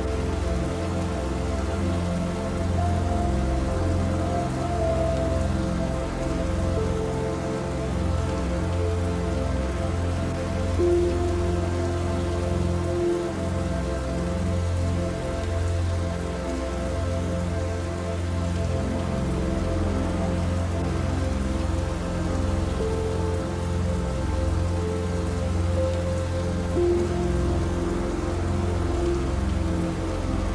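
Steady rain falling, mixed with slow, soft relaxation music of long held notes.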